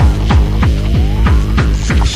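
Fast free-party tekno: a heavy kick drum that drops in pitch on each hit, about three beats a second, with hi-hat strokes and a synth tone gliding slowly upward.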